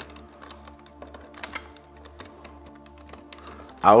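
Soft background music with a few small clicks from a lever-type wire connector being handled as a conductor is clamped in. The two sharpest clicks come about one and a half seconds in.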